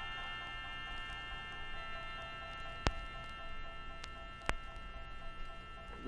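A quiet organ chord held steady as a sustained drone, slowly fading. Three faint clicks sound over it in the second half.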